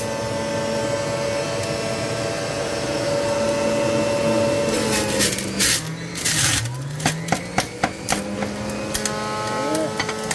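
Electric centrifugal juicer running as watercress is pushed down its chute: a steady motor whine that drops in pitch and climbs back about six seconds in as it labours on the greens, with a few crunches and then a quick run of sharp clicks.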